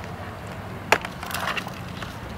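A sharp knock about a second in, then a short rattle of lighter knocks and clicks: handling noise from a hand moving a portable battery pack and a laptop on a stone curb.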